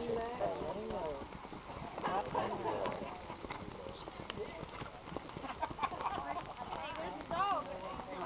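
Hoofbeats of gaited horses on a dirt arena, heard as scattered soft ticks, under the steady chatter of several spectators' voices.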